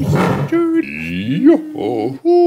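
A man's voice making playful sound effects for bouncing and swinging on a wire. It starts with a rushing whoosh, then a held note and a sweep rising in pitch about a second in, and ends with a wavering call.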